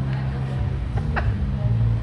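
Background chatter of people talking in a room, over a steady low hum.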